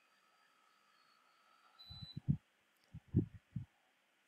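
Quiet room tone, then two clusters of short, dull low knocks, the first about two seconds in and the second a second later.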